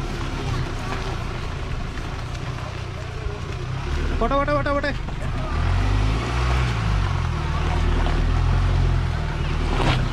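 Mahindra Thar's engine running at low speed as it crawls over a rutted dirt trail, its pitch rising and falling again around six to seven seconds in. A short wavering call, like a voice, sounds about four seconds in.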